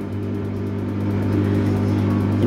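Electrolux front-loading clothes dryer running, its drum motor turning the drum with a steady low hum. The motor spins properly on a newly fitted 8 µF run capacitor; the old failed capacitor had kept the drum from turning.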